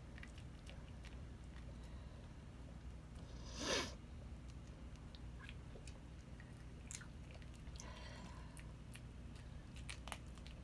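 A chihuahua chewing crumbly biscuit treat pieces, with faint scattered crunches and clicks. One louder, short rush of noise about four seconds in.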